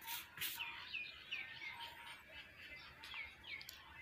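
A small bird chirping faintly: a run of short, falling chirps about three a second, then two more near the end.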